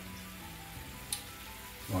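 Mirin sizzling softly in hot duck fat in a cast-iron skillet, under quiet background music with sustained notes. There is a brief sharp tick about a second in.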